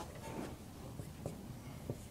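Dry-erase marker writing on a whiteboard: faint strokes with a few light ticks.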